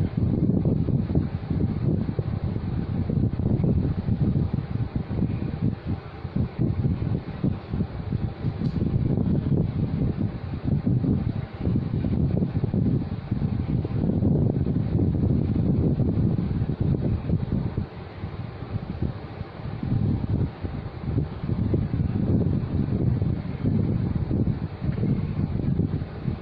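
Moving air buffeting the microphone: a loud, uneven low rumble that swells and dips every second or so.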